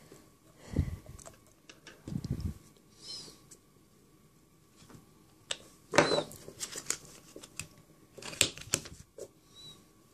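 Short knocks, clicks and scrapes of nail-stamping tools handled on a steel stamping plate: a polish bottle put down, polish worked over the plate and a stamper head pressed onto it. There are a few short high squeaks, and the loudest clatter comes about six seconds in.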